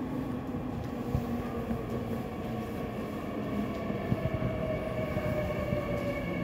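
Seoul Metro Line 3 subway train pulling into an underground station behind platform screen doors: a steady rumble of wheels on rail with a few sharp clicks. A motor whine drifts slightly lower, and a higher whine grows near the end as the train passes the doors.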